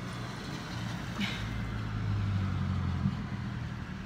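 Car engine running, a steady low hum heard from inside the cabin, swelling slightly for a second or so near the middle.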